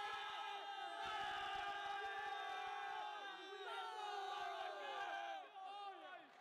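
A group of young men yelling and cheering together in victory celebration, many overlapping held shouts sliding down in pitch, fading out near the end.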